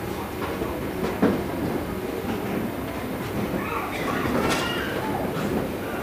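Chalk tapping and scraping on a blackboard over a steady background noise, with scattered sharp clicks; the loudest tap comes about a second in.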